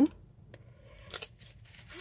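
Paper packing slip rustling as it is handled and set aside, with a few short crisp crackles, the loudest a little past a second in.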